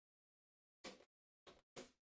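Faint handling noise: three short scuffs as a card box is moved on the table, about a second in, at about one and a half seconds and near the end, with dead silence between them.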